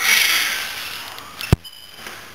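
A weightlifter's forceful, noisy exhale while curling a heavy barbell, starting suddenly and fading over about a second and a half, followed by one sharp click.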